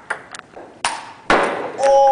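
Table tennis ball being hit back and forth: several sharp clicks of the ball on paddles and table, with a harder hit about 1.3 s in. A held, steady-pitched sound starts near the end.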